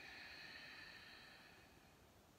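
Near silence: faint room tone that fades out completely near the end.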